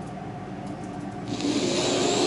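A steady low room hum, then a little over a second in a breathy hiss lasting about a second and a half, like a long breath close to the microphone.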